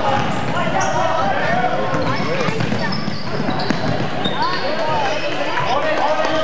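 Basketball gym during a game: many overlapping, indistinct voices of players and spectators, with a basketball being dribbled on the hardwood court. A few short high squeaks, typical of sneakers on the floor, come through the din.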